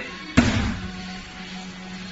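One heavy thud about half a second in, a foot stepping down onto an LED dance floor panel, over background music.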